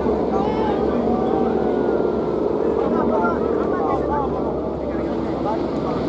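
Several spectators' voices overlapping over a steady low rumble that does not let up.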